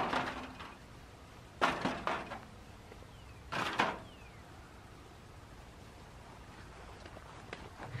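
Disposable aluminium foil pans kicked over: a sharp clatter at the start, then two brief scraping rattles about two and three and a half seconds in.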